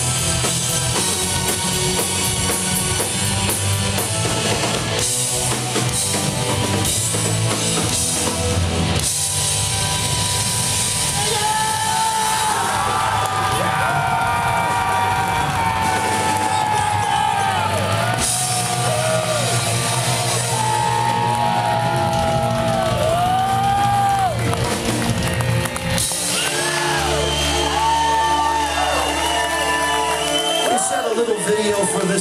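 Live progressive metal band playing at full volume: drum kit and guitars, then a held lead melody with pitch bends from about ten seconds in, settling into a long sustained closing chord near the end.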